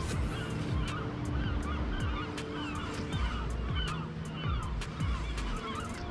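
A flock of birds calling continuously, many honking, squawking calls overlapping, with scattered sharp clicks over a low rumble of wind and water.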